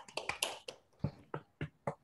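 Scattered hand clapping from a few people over a video call: quick overlapping claps at first, thinning to single claps near the end.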